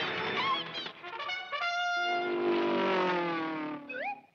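Orchestral cartoon underscore with prominent brass: a quick run of repeated notes, then a long held brass chord that sags slightly in pitch before breaking off near the end.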